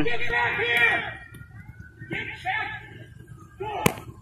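Police radio dispatch voice, cut off in the highs like a radio, for about the first second, then fainter voices. Near the end there is a single sharp crack.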